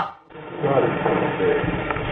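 Muffled, low-fidelity voices of people talking, over a dull steady background, cut off above the treble.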